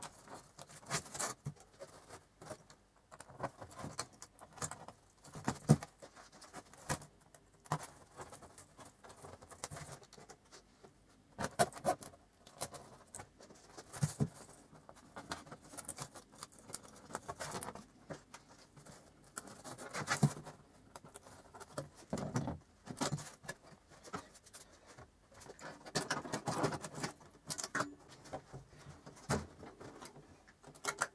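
Handling noise as cable ties are threaded through a polycarbonate wheel disc and the bicycle spokes and pulled tight: irregular clicks, short ratcheting runs and rustles of the stiff plastic sheet, in scattered bursts with a few sharper clicks.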